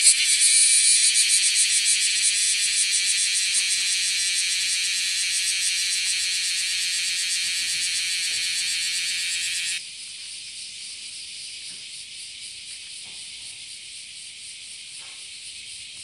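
A cicada singing close by: a loud, shrill, high buzz that slowly fades, then cuts off suddenly about ten seconds in, leaving a fainter steady cicada buzz behind.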